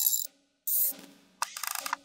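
Sparse percussion from the film score: two short hissy, cymbal-like hits, then a fast rattling run of clicks about one and a half seconds in, over a faint low hum.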